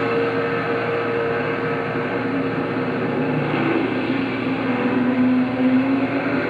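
Film soundtrack played over the hall's loudspeakers: a steady drone of motor-vehicle engines in a night-time city scene, with a low hum that grows stronger near the end.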